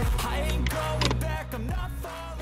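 Background music with a steady bass and a few sharp percussive hits.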